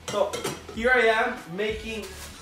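A ceramic bowl knocked and clinked against a countertop as it is handled, a few sharp knocks in the first half second.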